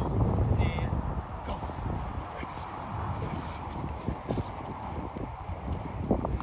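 Scattered quick footfalls of a football player running drills on a field, over a low rumble of wind on the microphone that is strongest in the first second.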